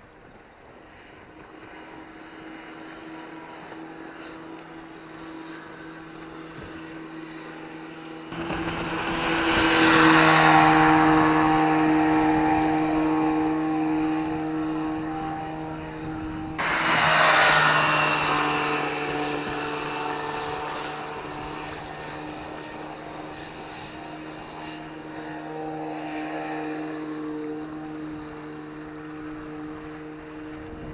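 1956 Johnson 15 two-stroke outboard running at speed on a small boat, a steady drone that grows louder as the boat comes nearer. Twice, about eight and seventeen seconds in, a sudden loud rush of noise cuts in over it and dies away over a few seconds.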